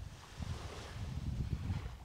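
Wind buffeting the microphone as a low, fluttering rumble, over a faint hiss of gentle surf at the shore.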